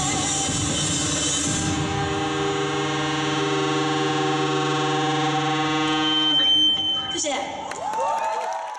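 A live rock band with distorted electric guitars holds its final chord and lets it ring out, with a high steady whine of guitar feedback about six seconds in. The chord cuts off about seven seconds in.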